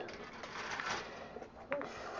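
Plastic model-kit sprues being handled and set down on a cloth mouse mat: faint rustling and a few light plastic clicks, mostly in the first second.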